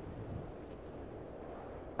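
Faint, steady low rumble of wind buffeting the microphone outdoors, with no distinct events.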